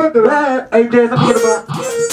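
Go-go band rehearsal music: a singer holds wavering sung notes over guitar, with the low drum beats dropped out. A short sharp hit comes near the end.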